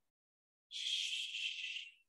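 A person's breathy hiss of air, lasting about a second and starting a little way in, with no voice in it.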